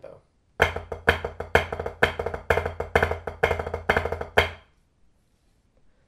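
Wooden drumsticks playing a triplet-based flam rudiment pattern on a rubber practice pad, with an accent about twice a second and lighter rebounded taps between. It starts about half a second in and stops about a second before the end.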